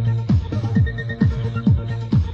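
Old-school new beat electronic dance music played from a cassette tape recording: a kick drum with a falling pitch about twice a second over a held bass note, with a short repeated high synth note. The sound is dull at the top, as a tape recording is.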